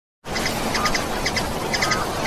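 Small birds chirping in quick groups of two or three notes about every half second, over a steady hiss. The sound starts abruptly just after the beginning.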